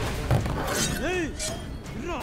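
A sharp crash about a third of a second in, then men shouting in strained, drawn-out cries as they grapple in a scuffle.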